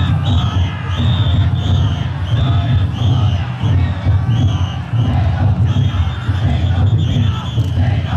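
Niihama taiko drum floats in a massed carry: a dense low rumble of the floats' big drums under a shouting, cheering crowd of bearers, with short high whistle-like blasts repeating in quick succession.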